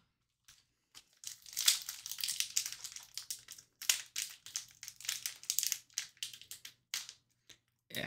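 Foil wrapper of a hockey-card pack crinkling and tearing as it is opened and handled, a run of crackly rustles starting about a second in.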